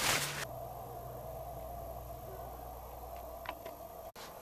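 Quiet workshop room tone under a steady low hum. A brief hiss opens it, and a faint click comes about three and a half seconds in.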